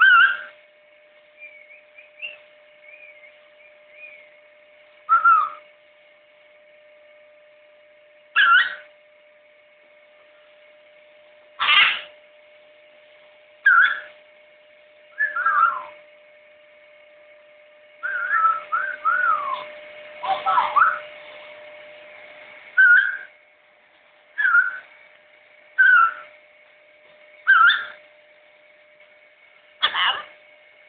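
Blue-and-gold macaw whistling: short separate whistles every second or two, some sliding downward in pitch, with a busier run of whistles about two-thirds of the way through.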